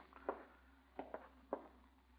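A few faint footsteps, about half a second apart, over a low steady hum.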